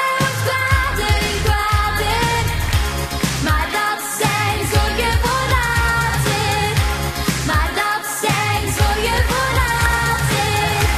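A young girl singing a pop-style musical-theatre song in Dutch, with a full band and a steady beat behind her.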